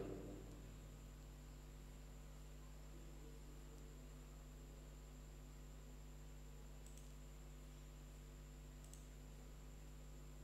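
Near silence: room tone with a steady electrical hum, and two faint, sharp clicks about seven and nine seconds in.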